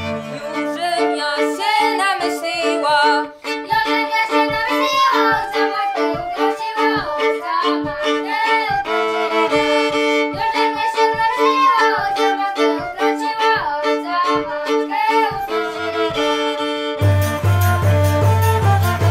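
Traditional Polish folk band playing a lively tune: fiddle and flute carry the melody and a frame drum taps a steady beat about twice a second. The low bowed basy drops out at the start and comes back in about a second before the end.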